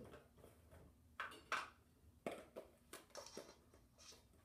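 Faint clicks and taps of a plastic spice container and a measuring spoon as dry garlic powder is measured out, about half a dozen light ticks spread over a few seconds.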